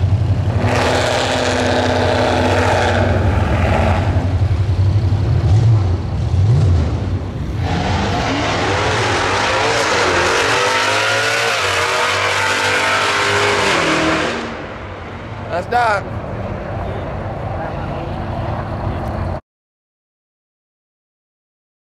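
Drag racing car engines: a loud engine running at the start line, then a car launching and accelerating hard down the strip, its engine note rising and falling repeatedly before dying away. A brief rising-and-falling whine comes near the end.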